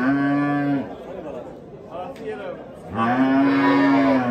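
Cattle mooing: two long, steady moos, the first ending about a second in and the second starting about three seconds in.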